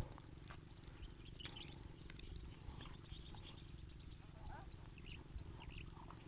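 Faint outdoor background: a steady low hum with a few faint, short high chirps and ticks scattered through it.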